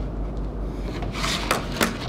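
Wood rubbing on wood as a small block is pressed along a wooden board. Near the end comes a short scraping rush with two sharp knocks as the board is lifted off the bench.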